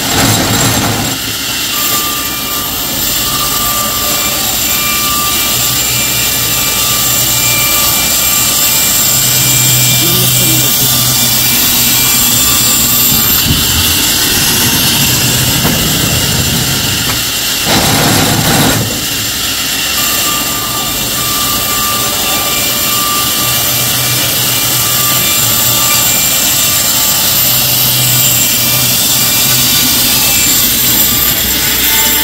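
The band saw of an old sawmill, built in 1938, running and cutting lengthwise through a poplar log, a loud steady mechanical noise. There is a short louder burst at the very start and another about eighteen seconds in.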